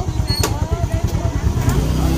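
Motorcycle engine idling close by: a rapid low pulsing, with voices faintly behind it.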